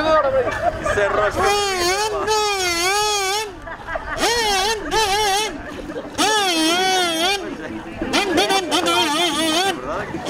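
A person's voice wailing in long, wavering, siren-like notes, four times with short breaks between, over faint crowd chatter.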